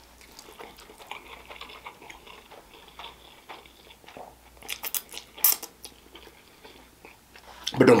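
Close-up eating sounds of a man slurping spaghetti strands into his mouth and chewing, with soft wet mouth clicks throughout and a few louder slurps about five seconds in.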